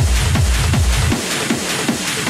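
Hard techno (schranz) DJ mix: a fast kick drum at about four beats a second under dense hi-hats and percussion. A little over a second in, the kick and bass drop out, leaving the high percussion running.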